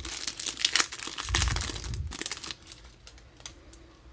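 The plastic wrapper of a Magic: The Gathering Kaldheim collector booster pack being torn open and crinkled, with busy crackling through the first two and a half seconds, then fading to a few faint rustles and clicks.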